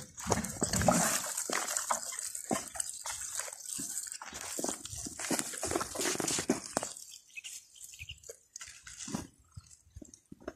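Water pouring from a plastic watering can and pattering onto dry soil, a steady splashing full of small taps that dies down about seven seconds in, leaving only scattered faint clicks.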